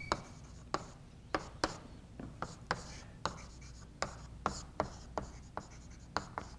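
Chalk writing on a chalkboard: a series of short, irregular taps and scrapes as figures are written out.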